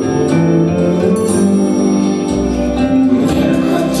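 A song performed live on stage: a man and girls singing into microphones over an instrumental backing track, with a deeper bass coming in a little past halfway.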